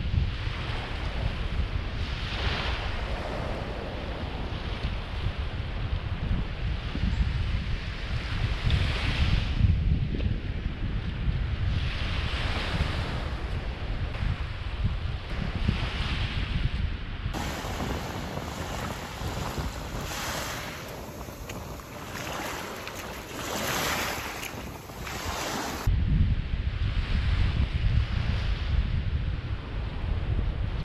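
Small waves washing up a sandy shore, swelling and falling back every few seconds, with wind buffeting the microphone. The wind rumble drops away for several seconds past the middle, leaving the waves more exposed, then comes back.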